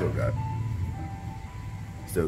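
A simple melody of thin electronic notes, a few short tones stepping between pitches, over a steady low hum.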